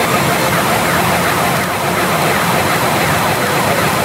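Pachinko parlor din: the hiss of steel balls from rows of machines, with the Sanyo Umi Monogatari machine's electronic reach effects, many overlapping rising and falling gliding tones, sounding over it.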